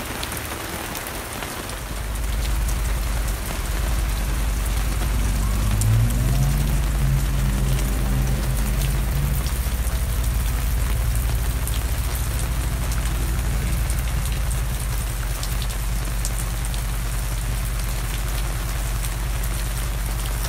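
Steady rain falling on an RV awning and the ground, with rainwater streaming off the awning's edge. A low rumble joins about two seconds in and runs underneath.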